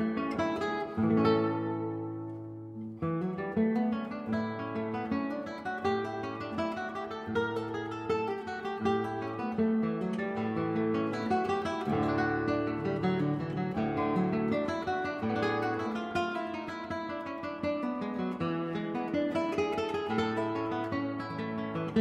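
Background music: acoustic guitar, plucked and strummed, with one chord left to ring out and fade briefly before the playing picks up again.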